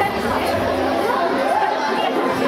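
Several voices talking over one another, an indistinct chatter.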